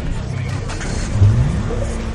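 Produced intro soundtrack of a news programme's title sequence: a dense, low bed with a rising swell about a second in that then holds.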